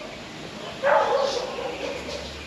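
A dog barking once, about a second in.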